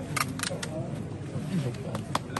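Camera shutter clicking three times in quick succession, over low background chatter.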